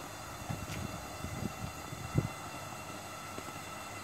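Aquarium diaphragm air pumps humming steadily as they inflate a paddling pool, with a few short low thumps, the loudest about two seconds in.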